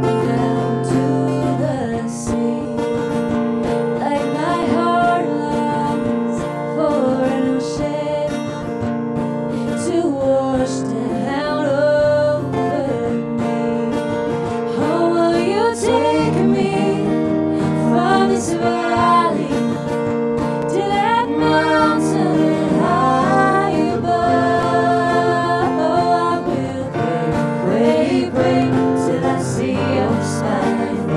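Live acoustic folk band playing: strummed acoustic guitars with a woman singing the melody.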